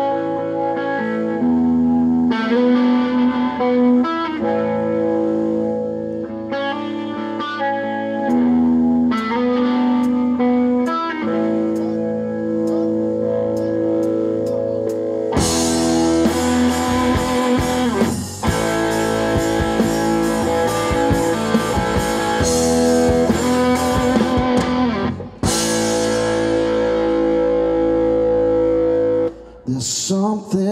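Live rock band playing an instrumental intro: an electric guitar rings out a riff of held notes for about the first half, then the drums and full band come in with crashing cymbals. The band breaks off for an instant about ten seconds later, then stops just before the end.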